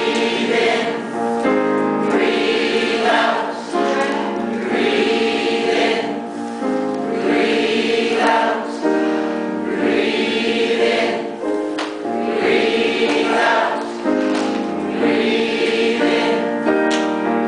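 A large mixed choir of men's and women's voices singing in harmony, repeating a short phrase every two to three seconds.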